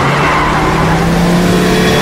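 Car tyres skidding under hard braking: a loud, steady screech over a low drone that rises slowly in pitch.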